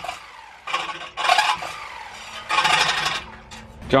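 Corded reciprocating saw cutting the sharp edges off a cut steel exhaust pipe in about four short bursts, its blade rasping on the metal with pauses between.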